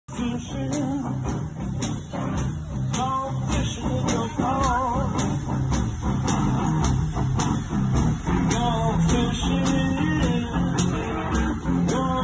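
Live blues from a one-man band: electric guitar played over a steady drum beat.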